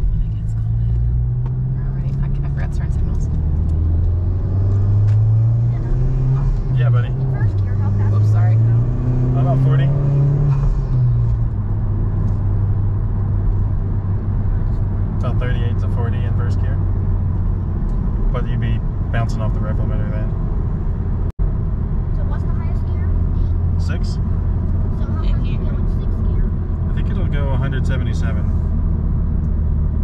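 Honda Civic Type R's four-cylinder engine heard from inside the cabin, being driven with a manual gearbox. Over the first ten seconds or so its pitch climbs and drops a few times as it pulls up through the gears. It then settles into a steady cruise with road noise.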